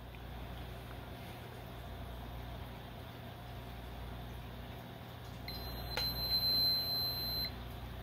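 Hygger aquarium heater's digital controller giving one steady high beep about two seconds long, starting about five and a half seconds in, as its button is held down to switch the display from Fahrenheit to Celsius; a click sounds partway through it. A low steady hum runs underneath.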